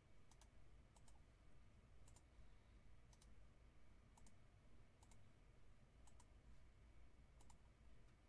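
Faint computer mouse clicks, single and in quick pairs, about one a second, over a low steady hum.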